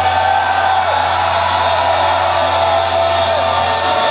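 A heavy metal band playing live, holding a low bass note under a lead line that bends up and down.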